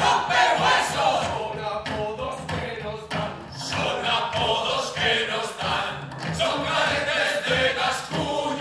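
Several men's voices singing together in chorus over music, a lively stage song.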